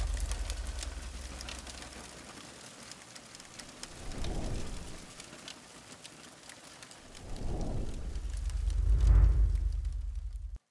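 Crackling fire sound effect with three low rumbling swells: one about four seconds in and two near the end, the last the loudest.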